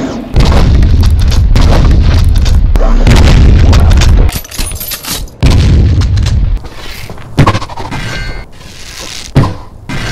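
A loud, deep boom lasting about four seconds, a brief drop, then a second, shorter boom about five and a half seconds in, followed by quieter scattered sounds with a few sharp knocks.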